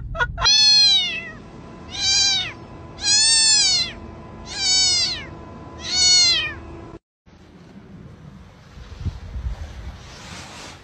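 A cat meowing five times, each meow rising then falling in pitch, about a second apart. The meows stop abruptly about seven seconds in, leaving only faint low noise.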